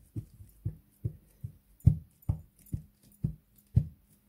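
Hands patting and pressing glued fabric flat onto a journal cover: a run of soft, regular thumps, about two a second.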